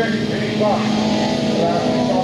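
Engines of autocross race cars running at a steady pitch as the cars race along a dirt track, with a man's voice speaking Dutch over them.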